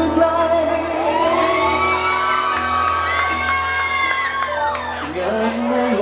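Live rock band playing, with guitars and drums under high gliding vocal lines and whoops.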